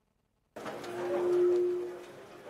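A lecture-room microphone feed switching on: dead silence breaks abruptly about half a second in to room noise, with one steady mid-pitched tone that swells and then fades.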